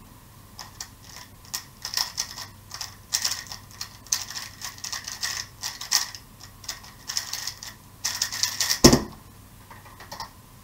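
A MoFang JiaoShi MF3RS M 2020 magnetic speedcube being turned fast through a 3x3 speedsolve: rapid clacking of the layers in quick flurries for about eight seconds. Near the end comes a loud thump as the solved cube is set down and the hands slap onto the stackmat timer to stop it.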